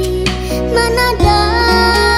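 Slow rock song with a female vocal over band backing and a steady bass line; a new held melodic note enters about a second in.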